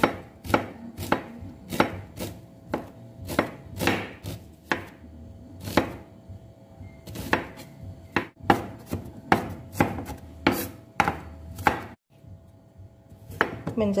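Kitchen knife slicing shallots on a wooden cutting board: each stroke ends in a sharp knock of the blade on the wood, irregularly, about one to two a second, with a brief pause midway. The knocking stops about two seconds before the end.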